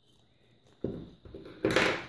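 Handling noise from a glass jar being turned in the hands: a dull knock about a second in, then a louder, brief scrape near the end.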